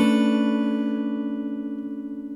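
Steel-string acoustic guitar, capoed at the seventh fret, ringing out on a single strummed chord and slowly fading. The chord is the C shape slid up two frets to make an open-ringing D.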